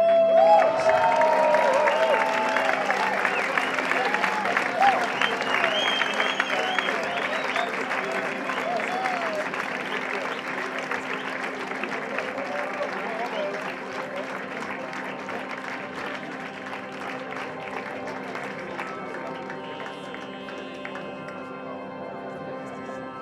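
Audience applause and cheering break out suddenly and die away slowly over about twenty seconds. A steady synthesizer drone holds underneath throughout.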